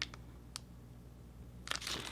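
Faint handling of a clear plastic packaging sleeve: light ticks near the start and about half a second in, then a soft crinkle near the end, over low room hum.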